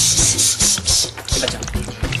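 A rasping, scraping noise in several quick strokes during the first second or so, over low background music.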